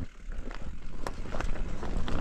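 Mountain bike riding down a leaf-covered dirt trail: tyres rolling with a steady low rumble, and sharp clicks and rattles from the bike as it rides over the rough ground, the loudest about half a second, a second and a second and a half in.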